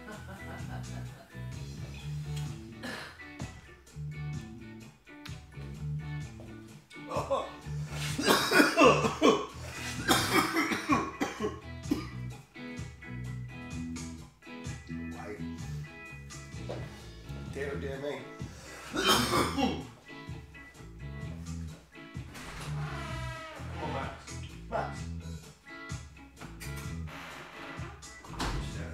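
A man coughing hard in fits after a strong hit from a handheld vaporizer, loudest about eight to eleven seconds in and again near nineteen seconds, over background music with guitar and a steady beat.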